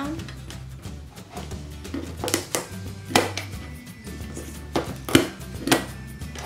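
An opened-up hand stapler clacking sharply several times as it drives staples through burlap into the wooden frame of a stretched canvas, the loudest clacks near the end, over steady background music.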